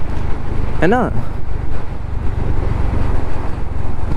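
Honda H'ness CB350's air-cooled single-cylinder engine running steadily at cruising speed, with low wind rumble on the rider's microphone.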